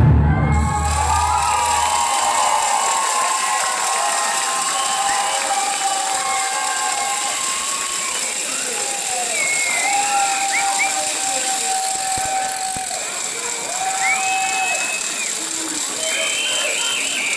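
Loud dance music with a heavy bass ends within the first second or two. A crowd then cheers, shouts and applauds, with a few long held shouts throughout.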